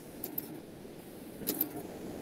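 A few faint, short clicks, in two pairs, over low steady background noise from an open call microphone.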